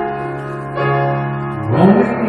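Piano accompaniment holding sustained chords, with a new chord struck about three quarters of a second in; a singing voice comes in near the end.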